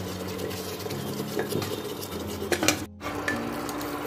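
A spoon stirring and scraping thick mutton korma gravy in a pressure cooker pot as it fries in oil, with small knocks of the spoon against the metal. The sound cuts out briefly about three seconds in.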